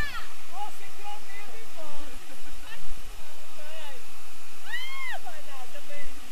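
Steady rush of river and waterfall water, with a splash of thrown water at the very start. Voices call out briefly a few times over it, loudest about five seconds in.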